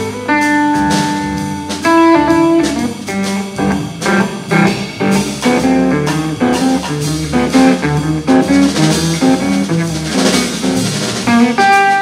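Jazz-blues trio playing: electric guitar leads over plucked double bass and drum kit. The guitar holds a couple of long notes near the start, then plays quick runs of single notes.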